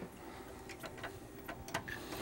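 Faint, scattered light clicks and taps of kitchenware being handled, a few irregular ticks over a quiet room background.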